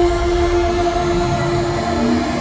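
Live concert music played loud over an arena sound system: a long held electronic tone over a low bass, ending just before the end as a lower note takes over.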